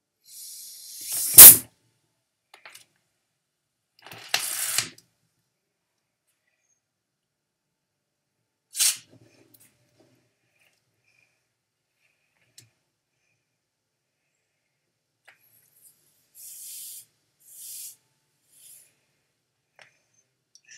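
Compressed air hissing out past the loosened cap of a twisted plastic soda bottle in several short bursts, the first rising into one loud, sharp crack about a second and a half in, with a single click near the middle. The loose cap lets the pressure escape without the big pop.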